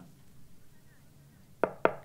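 Two quick knocks on a window, about a quarter second apart, near the end.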